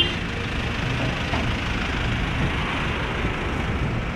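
Steady low rumble of motor vehicles running and moving, with a short car-horn toot cutting off at the very start.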